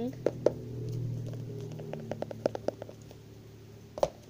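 A scattering of small sharp clicks and taps from objects being handled close to the microphone, with a quick run of them about halfway through, over a low steady hum that fades out midway.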